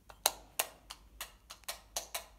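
A wall light switch flicked on and off over and over: a quick series of about eight sharp clicks, the first the loudest.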